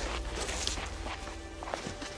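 A few irregular footsteps on stony, gravelly ground over a soft background music score.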